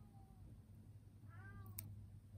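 A domestic cat meowing once, softly: a short call that rises and falls in pitch, about one and a half seconds in. A faint low hum lies underneath, and a small click comes near the end.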